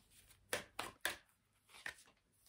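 Tarot cards being handled on a tabletop: about four short, sharp taps as cards are picked up and set down.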